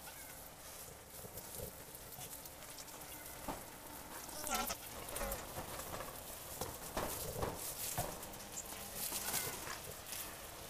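Dry split leaf strips rustling and crackling as hands sort and gather them into a broom bundle, with sharper crackles about seven and seven and a half seconds in. A short wavering call sounds about halfway through.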